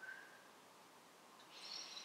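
Near silence: room tone, with a faint brief hiss about one and a half seconds in.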